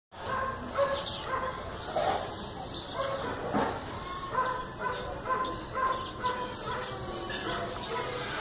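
Repeated short animal calls, roughly two a second, each a brief pitched cry over a steady background hiss.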